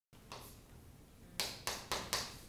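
Chalk striking and scraping on a chalkboard while writing: three short, sharp strokes in the second half.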